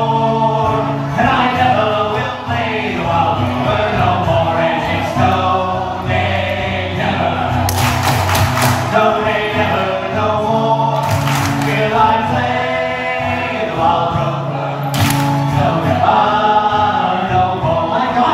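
Live folk band playing: male voices singing together over acoustic guitar accompaniment. Three brief noisy bursts rise over the music about 8, 11 and 15 seconds in.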